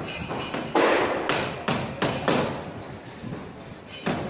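Construction-site knocks: four loud blows, the first about three quarters of a second in and the rest following about half a second apart, each ringing briefly. A steady din of site noise runs underneath.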